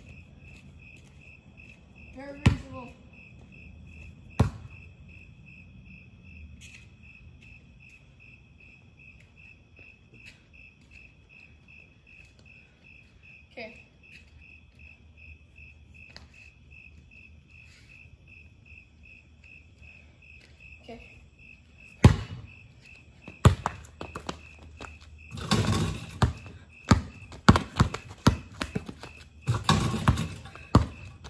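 Crickets chirping in a steady, fast, even pulse. There are a few single thuds early on; near the end a basketball bounces on the pavement, first single bounces and then quick dribbling.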